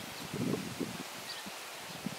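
Faint rustling of cherry-tree leaves and twigs as cherries are plucked by hand from a branch.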